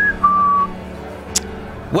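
Two short whistled notes, the second lower than the first, like a wry falling whistle, followed by a single sharp click.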